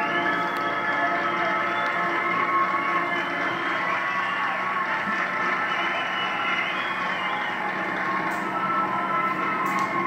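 High school marching band playing long, held brass chords, heard off an old videotape through a television speaker.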